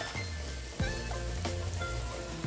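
Battered chicken pieces deep-frying in hot vegetable oil, sizzling steadily, under background music that changes note a little under a second in.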